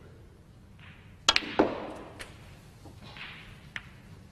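A snooker shot: the cue tip strikes the cue ball, then sharp clicks of balls colliding, about a second and a half in. The last click rings briefly, and a few fainter clicks follow later.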